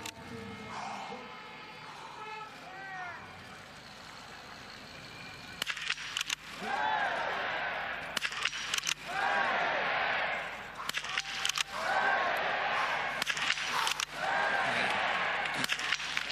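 Small-bore biathlon rifle fired standing, a run of single shots a couple of seconds apart through the second half. Each shot is followed by a swell of spectator cheering as the target falls, marking a clean shooting stage.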